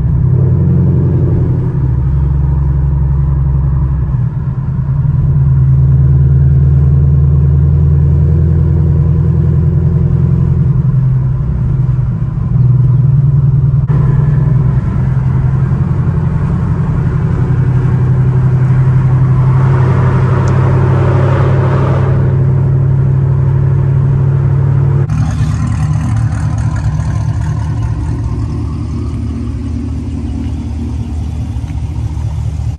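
Chevrolet Camaro SS's V8 heard from inside the cabin while driving: a steady low drone with road noise. There is a spell of rougher, brighter noise around twenty seconds in, and the sound jumps abruptly twice.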